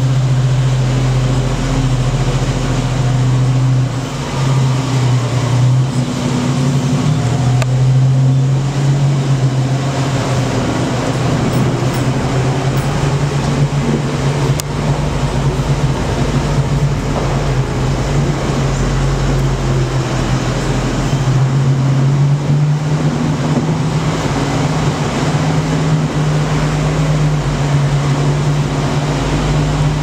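Engine of a tour vehicle pulling a cave tram, running steadily with a low hum whose pitch steps up and down a few times as its speed changes.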